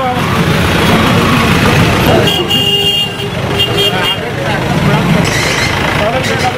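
A vehicle horn sounds in two honks, about two seconds in and again about three and a half seconds in, over street chatter and traffic noise.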